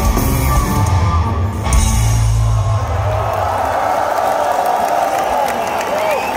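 Live punk rock band with drums, bass and guitars playing the last bars of a song through a big hall's PA. The music stops about three seconds in, leaving the crowd cheering and yelling.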